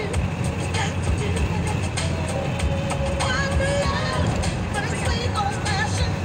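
Steady low rumble of a moving car's engine and tyres heard from inside the cabin, with music playing over it.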